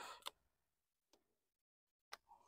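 Near silence, with two faint short clicks, one just after the start and one about a second in.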